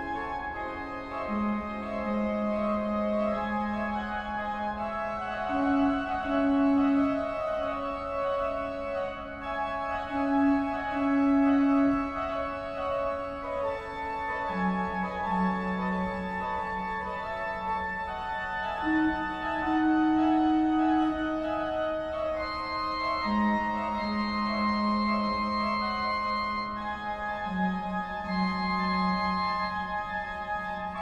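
Organ music: slow, sustained chords over long held bass notes that change every few seconds.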